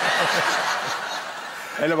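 Laughter, loudest at the start and fading over nearly two seconds.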